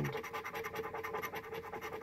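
A large metal scratcher coin is rubbed rapidly back and forth over a paper scratch-off lottery ticket, scraping off the latex coating in an even run of quick scratchy strokes.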